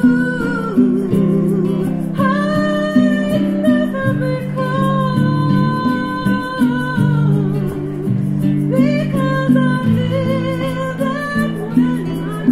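Live acoustic band music: acoustic guitar chords under a woman's voice singing long, held melody notes.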